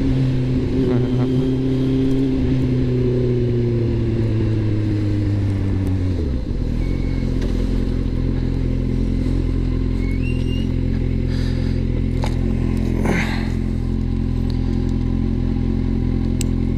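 Kawasaki Z750R's inline-four engine slowing down, its revs falling steadily for about six seconds and then settling into a steady idle.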